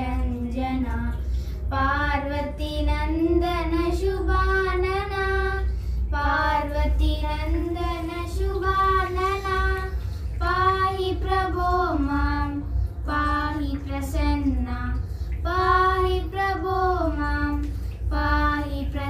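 Two young girls singing a Hindu devotional song together in slow, held phrases.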